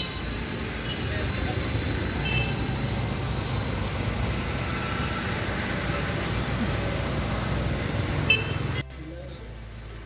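Steady outdoor road-traffic noise with a low rumble, which cuts off abruptly near the end to a much quieter indoor hum.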